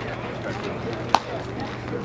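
A single sharp crack about a second in, over faint background voices.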